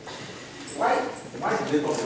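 A man speaking in short phrases, the words not made out.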